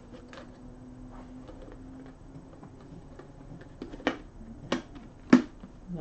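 Small desktop trash can being handled as its parts are twisted together: a few sharp clicks and knocks in the second half, the last the loudest.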